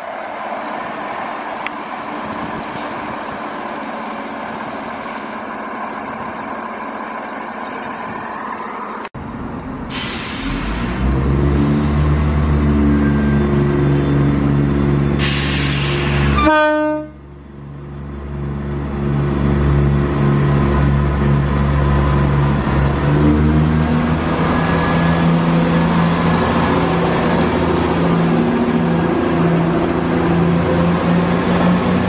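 Diesel trains at a station: first a steady mixed rumble of trains on the move. After a break about 9 s in, a ScotRail Class 170 Turbostar diesel multiple unit runs in and passes close, its underfloor diesel engines giving a loud, deep, steady drone with a rush of wheel and air noise over it.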